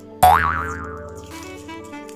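A cartoon 'boing' sound effect: a sudden loud springy tone that jumps up in pitch, then wobbles and dies away over about a second, over background music.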